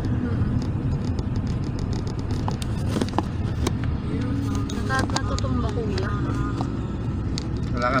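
Steady low drone of a car's engine and tyres, heard from inside the cabin while it drives, with a few light clicks.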